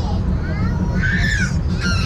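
Steady low rumble of an open rack-railway carriage running along the track, with high-pitched calls rising over it about a second in and again near the end.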